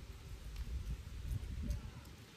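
Wind buffeting an outdoor microphone: an uneven low rumble, with a few faint ticks.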